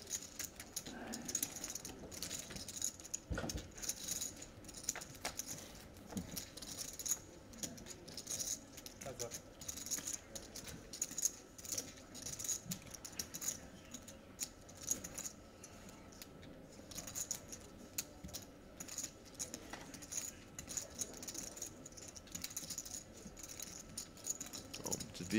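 Clay poker chips clicking and clinking as players handle and riffle their stacks at the table: a faint, continuous run of small irregular clicks.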